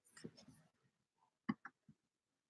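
Computer mouse clicks in quick pairs, like double-clicks, with a soft rustle just after the start.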